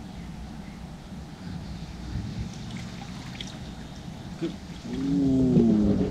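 Low rumbling background noise, then about five seconds in a man lets out a loud, drawn-out vocal exclamation that falls in pitch.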